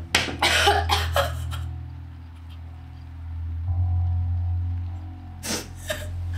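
A woman coughing hard several times in quick succession, then coughing again near the end, over a low, steady musical drone.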